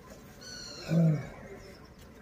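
A man's short, low grunt of effort about a second in, as he works the screw lid of a plastic rooftop water tank to open it. It comes just after a brief high squeak.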